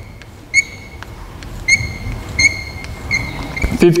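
Chalk squeaking on a blackboard as a number is written: about five short, high squeaks at the same pitch, one with each stroke of the digits.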